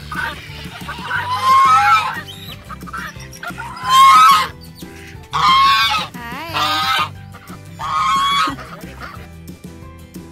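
Domestic geese honking loudly, about five calls a second or so apart, one of them wavering in pitch, over background music.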